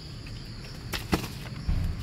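Steady high-pitched cricket trill in the background, with two short sharp clicks about a second in and a low rumble near the end.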